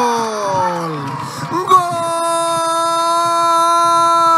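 A football commentator's drawn-out goal shout, the long cry sliding down in pitch over the first second. About two seconds in, it gives way to a long, loud tone held flat in pitch.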